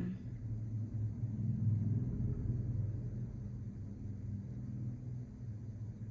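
A low rumble with a steady hum, swelling about a second and a half in and easing off slowly.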